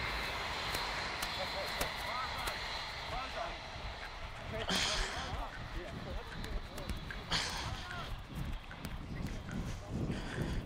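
Wind rumbling on a referee's body-worn microphone on a rugby field, with faint distant voices. Two short bursts of hiss come about five and seven and a half seconds in.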